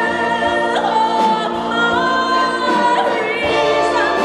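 A woman and a man singing together into microphones, backed by an orchestra, on long sustained notes. The melody steps up in pitch about halfway through.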